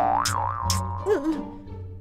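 A comedic cartoon sound effect: a tone that jumps up, wobbles up and down, then settles and fades, with two short sharp clicks in the first second, over light background music.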